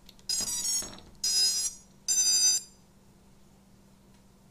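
Brushless motors of an FPV racing quadcopter sounding the BLHeli_S ESC power-up beeps as the battery is connected: three beeps, each about half a second long and about a second apart. The tones signal that the speed controller has powered up.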